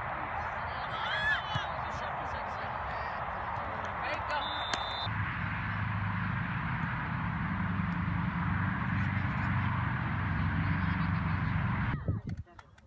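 Soccer match field sound: players' and spectators' voices and distant shouts over open-air noise, with a short high referee's whistle blast about four and a half seconds in. Halfway through, the sound changes to a steadier low rumble under the voices.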